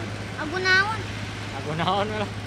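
A child's voice speaking in two short phrases, over a steady low hum.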